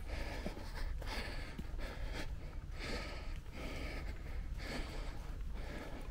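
A hiker breathing hard and fast, climbing a steep hill, in a quick, even rhythm of heavy breaths.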